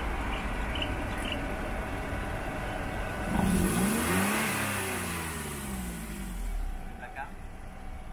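Perodua Axia's small three-cylinder engine, breathing through a newly fitted stainless steel extractor header, idles steadily. About three seconds in, a single throttle blip sends the revs up sharply, and they fall back toward idle over the next few seconds.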